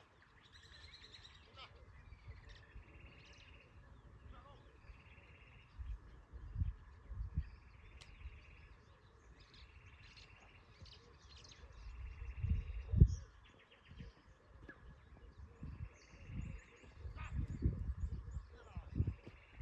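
A bird calling over and over, short buzzy notes repeated about every one and a half to two seconds. Low thumps come and go, the loudest about thirteen seconds in.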